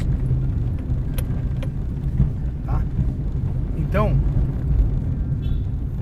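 Car cabin noise while driving: a steady low rumble of the engine and tyres on the road, with a few light clicks.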